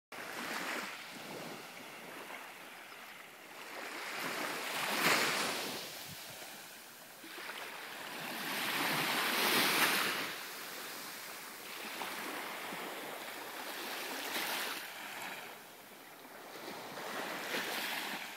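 Small surf washing up on a sandy beach from calm sea water, swelling and fading every four or five seconds.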